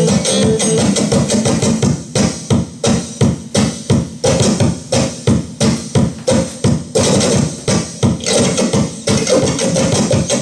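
Electric guitar played live through an amplifier: held chords at first, then from about two seconds in a rhythmic riff of short, chopped chords, several a second.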